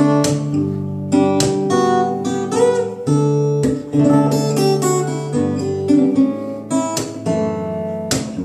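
Classical guitar strummed: chords struck in a steady rhythm with sharp strokes, the notes ringing on between them.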